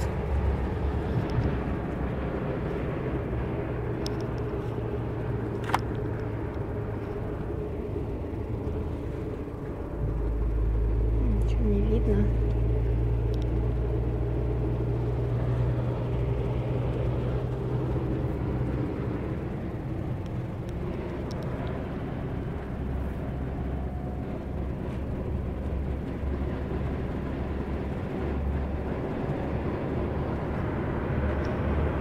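Steady low drone of a double-decker coach bus on the move, heard inside the cabin: engine and road noise. About ten seconds in, the drone steps up and stays louder. There is a single sharp click near six seconds.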